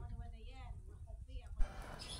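A faint voice speaking quietly over a low, steady rumble, with a short click near the end.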